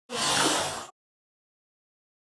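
A short whoosh of under a second as lycopodium powder poured over a candle flame flashes into fire, followed by silence.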